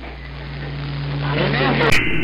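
AM radio reception on the 11-metre CB band at 27.025 MHz, heard through an Icom IC-7300: faint, distant voices under static, with a low steady hum that starts right away and grows louder. A sharp click near the end as a stronger station comes on.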